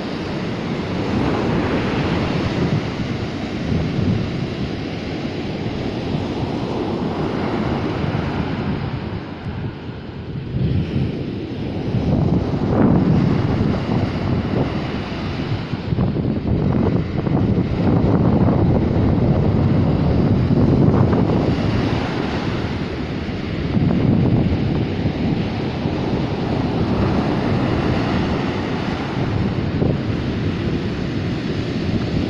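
Ocean surf breaking and washing up a sandy beach, swelling and easing every few seconds, with wind buffeting the microphone.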